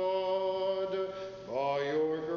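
Orthodox liturgical chant: voices hold one sustained note, then slide up into a new phrase about one and a half seconds in.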